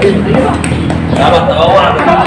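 People's voices talking and calling out, with a short sharp knock about two thirds of a second in.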